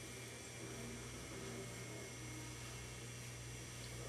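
Steady low electrical hum with a constant hiss, and no distinct event.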